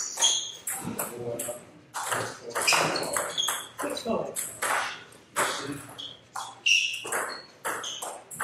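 A table tennis rally: the ball is struck by the bats and bounces on the table in a quick run of sharp clicks, several a second, some with a short high ping.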